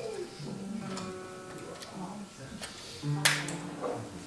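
Guitar notes ringing softly and held, with a few small handling clicks and a short rustle about three seconds in.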